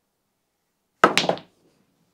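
Snooker cue striking the cue ball, then balls clacking together on a small snooker table: a sharp click and a few quick knocks with a brief ring, about a second in, after silence.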